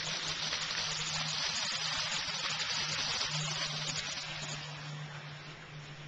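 Water gushing out of a sump pump's discharge hose and splashing onto leaf litter: the pump is running after its float switch tripped at the newly lowered water level. A steady low hum runs underneath, and the gush eases a little near the end.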